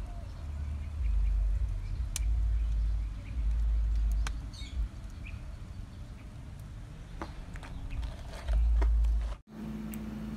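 Wind buffeting a phone microphone in uneven low rumbles, with a few faint sharp clicks and faint bird chirps.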